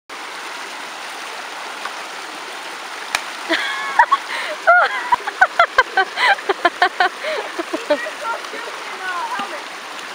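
Creek water running steadily over rocks and a small cascade. From about three and a half seconds in, people's voices call out over it, with a few sharp clicks among them.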